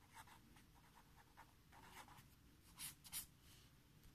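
Pen writing on paper: faint scratching of handwritten strokes, ending in an underline, with two slightly louder strokes about three seconds in.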